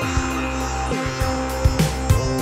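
Live-improvised electronic music played on keyboard synthesizers: a sustained bass under synth tones that slide down in pitch, with a few drum hits near the end.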